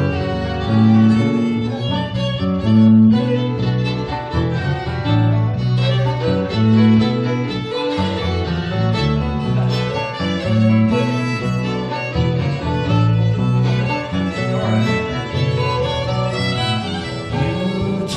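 Live acoustic jazz band in an instrumental break: a violin plays a solo over guitar and a bass line.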